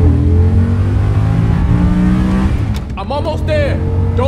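A car engine accelerating hard, its pitch climbing steadily for about two and a half seconds. In the last second, wavering higher-pitched sounds join it.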